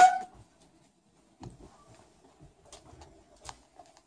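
A voice trailing off in a short gliding sound at the very start, then quiet household movement: faint low footfalls and a few light clicks and knocks, as of a wardrobe door being handled.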